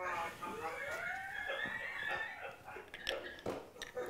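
A faint voice, well below the level of the speech around it, rising and falling in pitch, then a few sharp clicks near the end.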